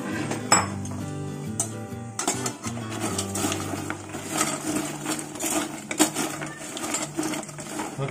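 Kitchen utensils clinking and scraping against a dish while food is mixed, with background music that has sustained low notes, strongest in the first two seconds or so.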